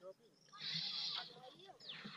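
High-pitched children's voices calling out. They are loudest from about half a second to a second in, with a quick falling cry near the end.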